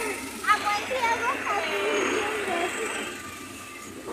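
People talking, with voices coming and going over steady outdoor background noise.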